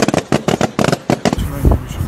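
A rapid run of sharp balloon pops, many each second, as a machine bursts a long chain of red balloons one after another, like a string of firecrackers. It breaks off about a second and a half in.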